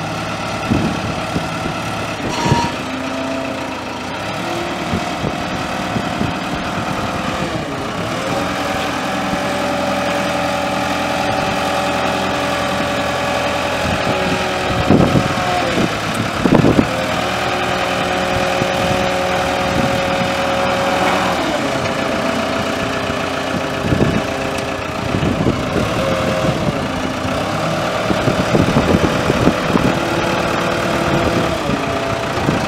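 The Cummins B3.9 four-cylinder diesel of a 1999 SkyTrack 10542 telehandler running as the machine drives slowly, its revs rising about eight seconds in, dipping briefly midway and easing back a little later. A few short sharp knocks come through, mostly in the second half.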